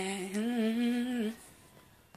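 A woman vocalizing without words, unaccompanied: one held note with a slight waver that stops about a second and a half in.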